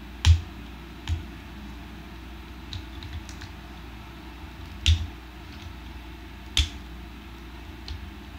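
Hard plastic parts of a Transformers Combiner Wars Streetwise figure clicking and snapping as they are handled and pressed together: four sharp clicks spread unevenly, with a few fainter taps between.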